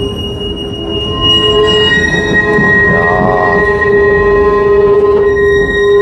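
Historic tram's steel wheels squealing on the rails in steady high tones as it rounds a curve, over the rumble of the car running on the track, heard from inside the car.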